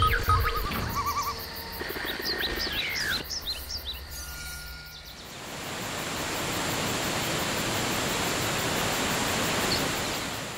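Intro sound design of music with short chirping, bird-like calls and beeps. About halfway through it gives way to a steady rush of waterfall noise, which fades out near the end.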